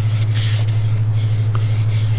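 Fine-grit (180–220) sanding strip worked quickly back and forth across a wooden guitar neck in shoe-shine strokes, a steady hissing rub, over a steady low hum.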